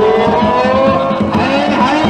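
A singer of the danjiri hikiuta (pulling song) holding one long note that slowly rises in pitch, with other sliding voices coming in near the end.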